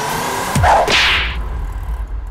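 A loud whip-like swish sound effect, swelling about half a second in and fading by about a second and a half, over electronic dance music with a rising tone and a falling bass sweep.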